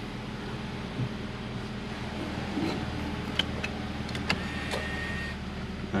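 Hyundai Sonata engine idling, heard from inside the cabin, with a few light clicks and then, a little after four seconds in, a short electric motor whine of about a second as the electronic parking brake releases.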